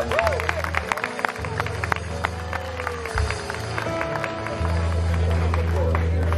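A live band plays on after a sung performance, with held low keyboard notes and guitar. The low notes swell about two-thirds of the way in, under scattered clapping from the audience.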